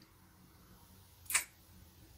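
Very quiet room tone broken once, just past halfway, by a single brief sharp click.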